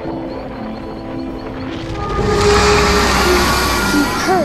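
Dark soundtrack music with held notes; about halfway through, a loud rushing whoosh swells in over it.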